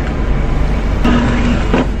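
Car engine idling: a steady low rumble heard from inside the cabin, with a brief voice about halfway through.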